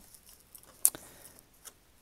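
Faint handling of paper sheets, with one sharp click a little under a second in.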